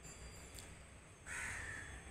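A single harsh bird call over faint background noise, starting a little past the middle and lasting under a second.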